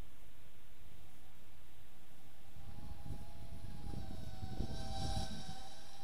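Small brushless FPV racing quadcopter (Walkera Rodeo 110 with tri-blade props) flying toward the microphone: its motor and propeller whine comes in about three seconds in and holds a steady high pitch. Wind rumble on the microphone throughout.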